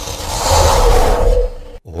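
Wind sound effect: a cold, gusting rush with a whistling tone that swells and then cuts off suddenly near the end.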